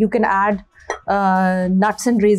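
A woman's voice talking, which the transcript did not catch, with one long held sound about a second in.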